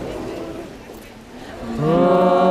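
Low murmur of voices and street noise, then near the end a voice begins to sing, sliding up from a low pitch into a long held note.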